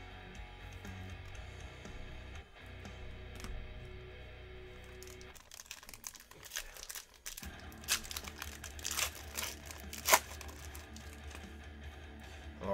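A foil trading-card pack wrapper crinkling and tearing open, a run of sharp crackles through the second half, over quiet background music.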